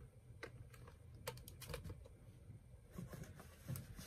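Faint, scattered light clicks and taps, about a dozen spread irregularly, from hands handling a plastic toy tractor and items from a haul bag.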